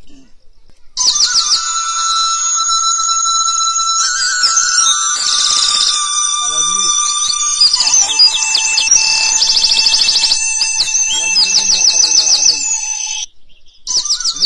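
A dense chorus of birds chirping and trilling rapidly at a high pitch, over long steady whistled tones. It starts abruptly about a second in and cuts off abruptly near the end, with a few faint voice fragments under it.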